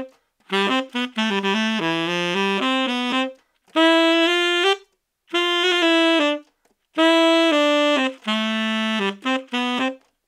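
Tenor saxophone playing a melodic line in short phrases, with brief breaths between them and the playing stopping near the end.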